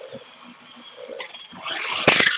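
A remote-control car's electric drive motor, driven through its ESC from the gamepad stick: a quiet high whine, then a rising whir as it revs up and gets loud in the last half second.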